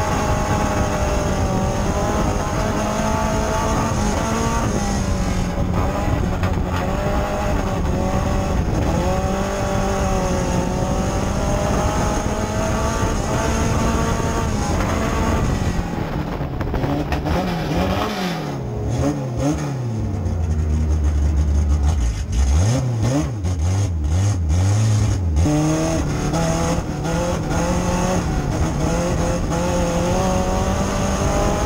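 Dirt-track race car engine heard from inside the cockpit, its pitch rising and falling through the turns of the oval. From about halfway in, for some ten seconds, the engine note drops low and swings up and down amid a run of sharp knocks and clatter, then the steady racing pitch returns near the end.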